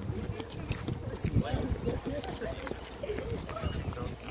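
Low, indistinct talking with footsteps on a concrete sidewalk.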